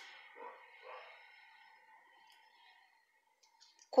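Faint soft rustling and small clicks of a metal crochet hook working yarn into double crochet stitches, over a faint steady hum. The sound drops to near silence in the second half.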